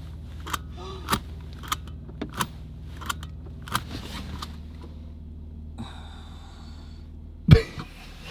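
Seatbelt buckle being fumbled at in a car cabin: a string of light clicks, roughly two every second, over the steady low hum of the running car. A faint high tone follows, then one sharp thump near the end.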